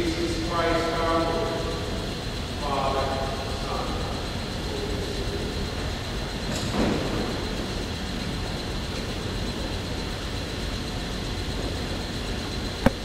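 A man's voice at the altar, distant and indistinct, in two short phrases within the first few seconds, over a steady low rumble and hiss from the camera's microphone in the large church. A brief rustle-like noise comes about seven seconds in.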